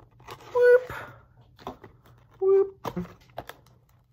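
Razor blade cutting the packing tape on a cardboard shipping box: scattered light scrapes and clicks. Two short squeaky tones stand out, one about half a second in and one about two and a half seconds in.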